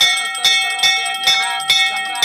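Hand-held brass puja bell (ghanta) rung steadily during a Hindu aarti, about two and a half strokes a second, each stroke leaving a lingering metallic ring. A priest's Sanskrit chanting goes on faintly underneath.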